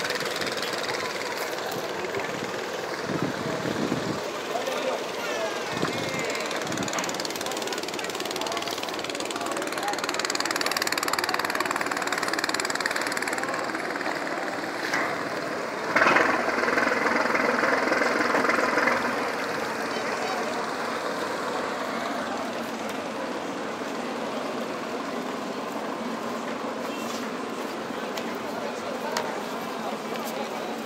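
Chatter of a waiting crowd over the steady running of a large passenger riverboat's engine as it comes alongside the quay, with a louder stretch of a few seconds just past halfway.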